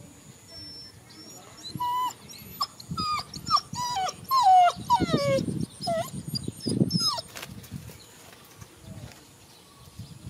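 A dog whining in a rapid series of short whimpers, each falling in pitch, from about two seconds in until around seven seconds in.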